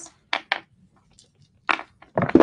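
Handling noise from a beaded tinsel-and-ribbon tassel on a pillow being moved about: two quick clicks, then a louder rustle near the end.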